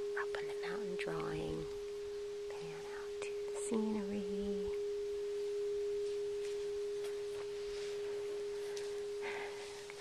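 A singing bowl rubbed around its rim with a wand, holding one steady, pure ringing tone without fading.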